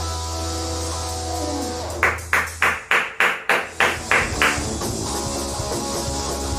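Live rock/metal band (electric guitar, bass and drum kit) playing the closing bars of a song: a held distorted chord with one note sliding down, then a run of about eight hard drum hits, roughly three a second, then a ringing chord.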